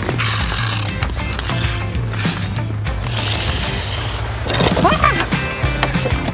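Ice skate blades scraping and carving across outdoor rink ice in two spells of scratchy hiss, over background music with a steady bass line.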